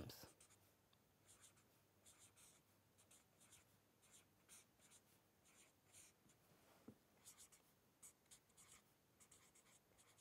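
Very faint scratching of a felt-tip marker writing on paper, in short strokes that come in bunches. There is one soft tap about seven seconds in.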